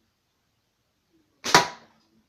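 A single slingshot shot about one and a half seconds in: a short snap, then a louder sharp crack a tenth of a second later that dies away quickly, the slingshot's bands releasing and the ball striking the target.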